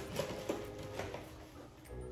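A few light taps and knocks, about four in the first second and a quarter, as a cardboard cereal box and dishes are handled on a kitchen counter.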